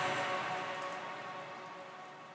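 The tail of an electronic track fading out: a hiss-like noisy wash with faint held synth tones dies away steadily.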